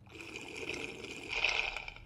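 A long slurp of a drink sucked up through a straw. It grows louder near the end, then stops.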